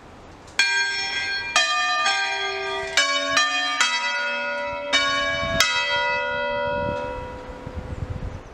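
A four-bell church peal tuned in B is rung in an uneven sequence. About eight strikes of different bells come over some five seconds, each note ringing on and overlapping the next. The ringing then dies away near the end.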